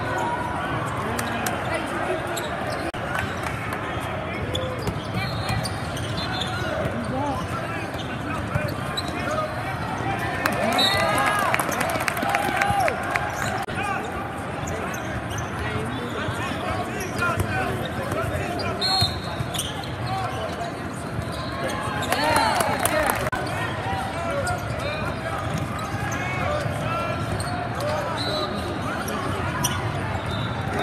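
Basketball game on a hardwood court: the ball bouncing and sneakers squeaking, under constant chatter from spectators in a large gym. The bouncing and squeaking grow busier about ten seconds in and again a little past twenty seconds.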